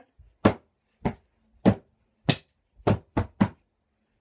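Drumsticks striking in a slow, steady beat, about one hit every half-second, closing with three quicker strikes near the end.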